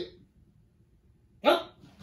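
A single short, sharp shout from a karate practitioner about one and a half seconds in, falling in pitch, with a brief voiced sound fading right at the start.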